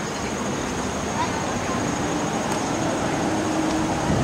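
Steady rushing noise of rain and flowing floodwater.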